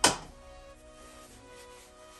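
A single sharp knock right at the start, dying away quickly, over quiet background music with held notes.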